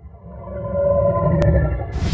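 Title-animation sound effect: a low rumble under a sustained, layered tone that swells louder, a sharp click about one and a half seconds in, then a short bright hissing burst near the end that cuts off abruptly.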